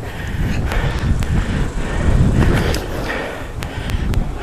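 Labeda inline skate wheels rolling over concrete pavement: a steady low rumble with a few sharp ticks scattered through it.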